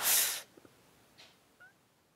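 A short, sharp breath huffed into a close headset microphone, lasting about half a second, followed by a few faint ticks.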